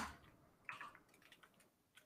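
Near silence, broken only by one faint, brief sound just under a second in.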